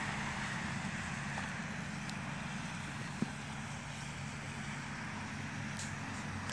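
Steady hiss of water spraying from a lawn sprinkler, over a low steady hum, with one small click about three seconds in.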